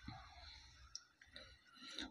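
Near silence: room tone, with a faint click or two.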